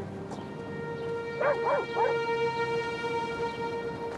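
A dog barks three times in quick succession about a second and a half in, over slow sustained background music.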